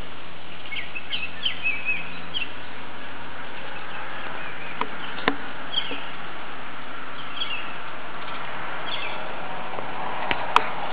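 Small birds giving short, repeated chirps in scattered clusters over a steady background hiss, with two sharp clicks about halfway through.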